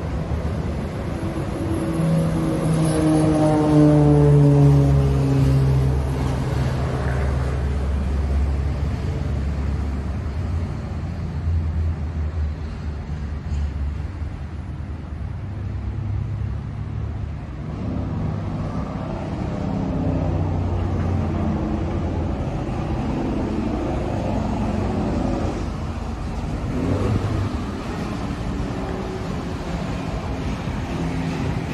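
A motor vehicle passing close by, its engine note falling in pitch as it goes past and loudest a few seconds in, followed by a steady low rumble of traffic.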